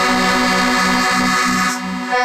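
Accordion playing a held chord over bass notes that pulse about three times a second, moving to a new chord near the end.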